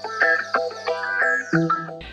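Background music: a quick run of short plucked guitar notes.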